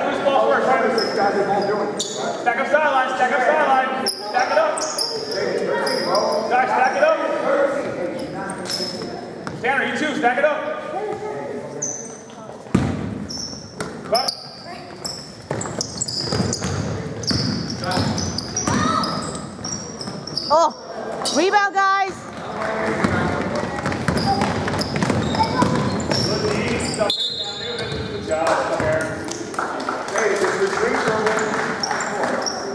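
A youth basketball game on a hardwood gym floor: the ball bouncing and players' shoes squeaking, with spectators' and players' voices echoing in the hall.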